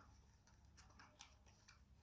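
Near silence with a few faint ticks: a small cardboard toy box being handled as the model inside is slid out.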